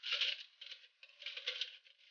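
Loops of stiff plastic 3D-printer filament rattling and rustling against a spool as it is handled and wound by hand, in a few short crackly bursts.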